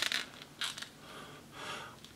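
A few soft creaks and scrapes from a 7-inch plastic action figure as its hip joint is worked and its leg is raised in the hand.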